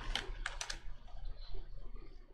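Computer keyboard keystrokes: a few sharp key clicks in the first second, then only faint scattered ticks.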